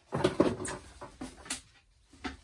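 Cardboard box and plastic wrapping being handled as a shower head is unpacked: a burst of rustling in the first second, then a few light knocks.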